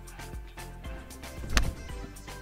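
A golf club strikes the ball once, a sharp crack about one and a half seconds in, over background music with a steady beat.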